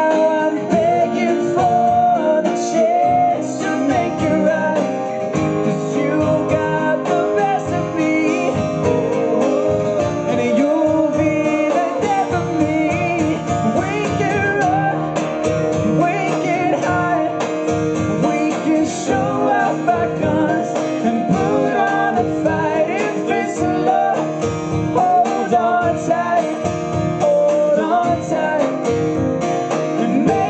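Live pop-rock song through a PA: a steadily strummed acoustic guitar with a male voice singing over a band.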